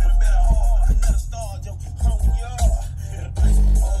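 Music played loud through two Sundown Audio E8 V6 8-inch subwoofers driven by a Sundown SLT 4K amplifier in a truck cab. Deep bass notes dominate: heavy during the first second, weaker in the middle, and heavy again near the end.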